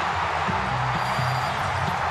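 Stadium crowd cheering loudly and steadily, celebrating a game-winning grand slam, with music playing low underneath.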